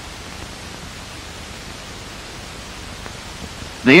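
Steady hiss of a worn 1950s film soundtrack, even and unchanging, with nothing else over it.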